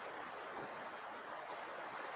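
Steady outdoor background hiss with no distinct sound standing out.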